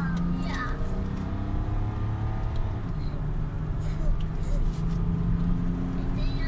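Car engine heard from inside the cabin while driving, its note climbing under acceleration, dipping about three seconds in, then holding steadier. A voice is heard briefly near the start.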